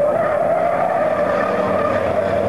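Racing truck's diesel engine running hard as the truck takes a corner, a steady droning note that drifts slightly lower in pitch.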